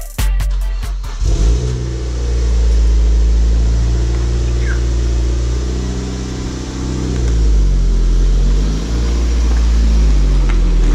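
Mazda MX-5 Mk3's four-cylinder engine running, its revs dipping and rising as the car pulls out. Music ends about a second in.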